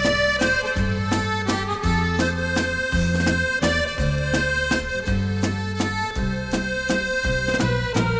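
Instrumental break of an Irish folk ballad: a melody line of held notes over bass notes and a steady beat, with no singing.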